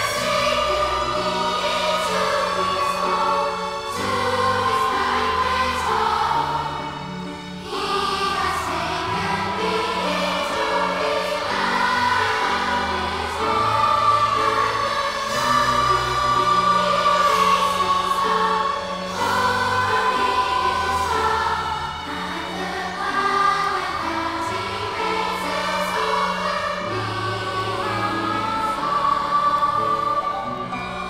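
Large children's choir singing together with instrumental accompaniment, held sung notes over a bass line that steps from note to note every second or two.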